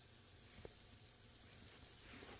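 Faint steady hiss, close to silence, with one small click about two-thirds of a second in.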